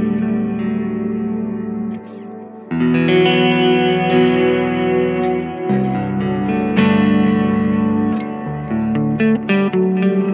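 Jackson Pro Dinky HT7 seven-string electric guitar played clean on its neck pickup, a Fishman Open Core Classic in voice 1, the vintage PAF-style voicing, through a Kemper Mesa Boogie Lone Star clean profile. Ringing chords change every few seconds, with a brief dip about two seconds in.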